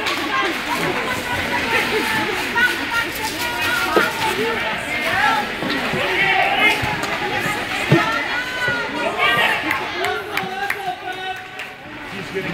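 Overlapping indistinct voices, children among them, talking in an ice rink, with a single sharp knock about eight seconds in.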